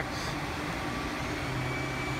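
Steady background noise with a faint low hum, joined by a thin, steady high whine about a second and a half in.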